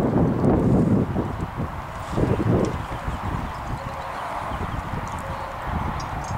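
A pony's hooves cantering on the arena surface, loudest in the first second with another short burst about two seconds in, then fainter.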